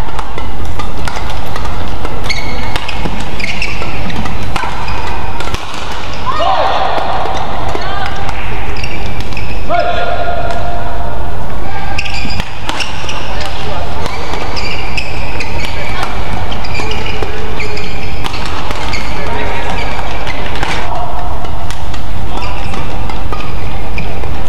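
Badminton rally in an indoor hall: rackets striking the shuttlecock in quick exchanges and shoe soles squeaking on the court floor, over steady hall noise and voices.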